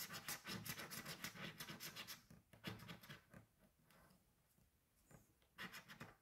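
Scratch-off lottery ticket being scratched: quick, rapid scraping strokes across its coating for about two seconds, a few more strokes, a pause of about two seconds, then another short run of scraping near the end.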